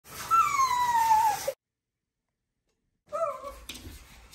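A pug whining while it is being bathed: one long cry, falling slowly in pitch, for about a second and a half. After a short silence comes a shorter, quieter whine near the end.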